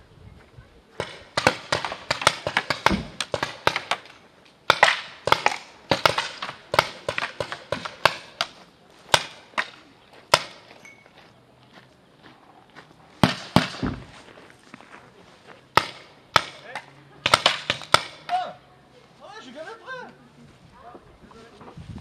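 Paintball markers firing in rapid bursts of sharp pops, several shots a second, in repeated volleys with short pauses between. Faint shouting voices come in near the end.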